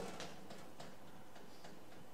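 Chalk writing on a blackboard: a series of faint, short taps and scratches as symbols are written.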